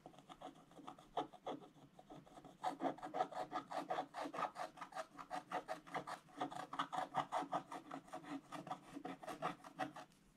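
Wooden stylus scratching the black coating off a scratch-art sheet. A few separate strokes first, then fast, steady back-and-forth scraping of about five or six strokes a second from about two and a half seconds in, stopping at the end.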